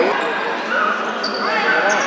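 The din of a futsal match in a large, echoing sports hall: players' and spectators' voices overlapping, with a few short high squeaks in the second half.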